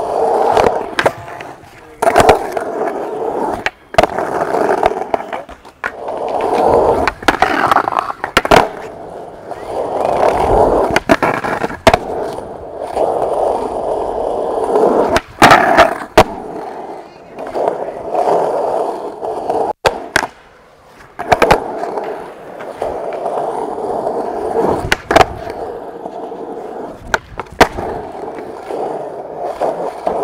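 Skateboard wheels rolling on rough concrete, with repeated sharp clacks of the board's tail popping and the deck landing.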